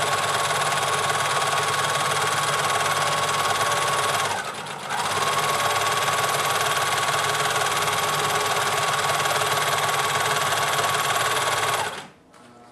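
Singer serger, threaded with one needle and three spools, running steadily as it overlocks a pant-leg seam and its knife trims off the excess fabric. It pauses briefly about four seconds in, runs again, and stops near the end.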